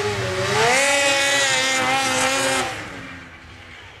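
Polaris XC SP 500 two-stroke snowmobile, fitted with a Sno Stuff Rumble Pack exhaust can, revving up hard: the pitch climbs about half a second in, holds at high revs for about two seconds, then the sound fades out.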